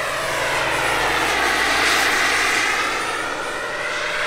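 Turbine-powered scale model Bell 412 helicopter, with a Jakadofsky Pro 5000 turbine and a 2.5 m rotor, flying past overhead: steady turbine whine and rotor noise that swells to a peak about two seconds in, then eases off.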